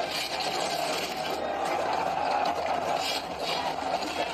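Soundtrack of an animated battle scene against robot drones: a dense, continuous mix of action sound effects with mechanical clanking and rattling.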